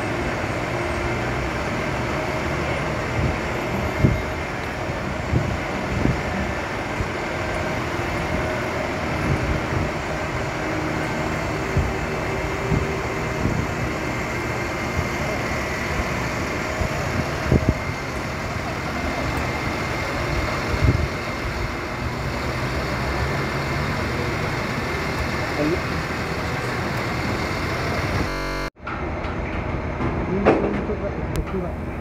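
City street ambience: steady traffic noise with indistinct background voices and a few scattered knocks. The sound drops out suddenly for a moment near the end.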